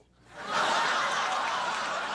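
A studio audience starts laughing a moment after a brief hush, rising quickly to a loud, sustained laugh that holds.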